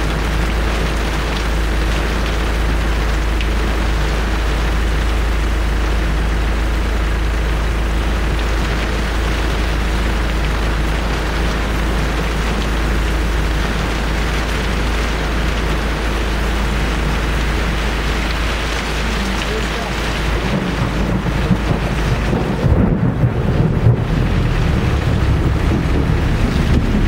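Heavy rain falling steadily, heard from inside a vehicle, with an engine running low underneath. About 20 seconds in, a rougher, louder rumbling with jolts sets in as the vehicle drives off over rough ground.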